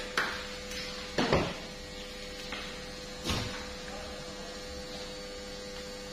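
A knife cutting through raw tuna flesh along the backbone in a few short strokes: one near the start, a louder one just over a second in, and another about three seconds in. A steady electrical hum runs underneath.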